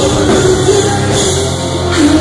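Live heavy rock band playing loud, with bass guitar, electric guitar and a drum kit.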